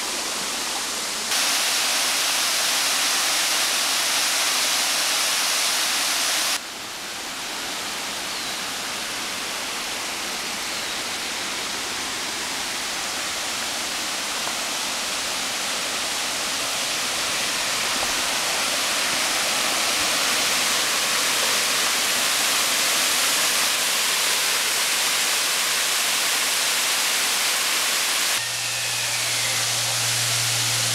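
Steady rushing of falling and flowing water from a waterfall and creek, an even hiss that jumps abruptly in loudness and tone three times. A low steady hum joins it after the last jump near the end.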